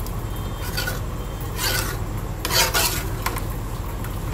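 Metal ladle scraping and stirring through thick dal makhani in a metal pot, with two main rasping strokes about one and a half and two and a half seconds in.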